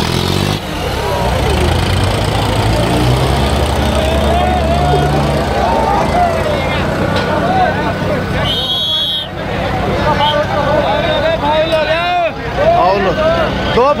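John Deere 5210 tractor's diesel engine running steadily close by, under the shouts of a large crowd.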